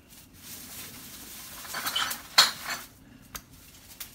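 Plastic cups and a plastic bowl handled on a table: a rustling scrape builds for about two seconds, then comes a sharp clack and a couple of lighter knocks.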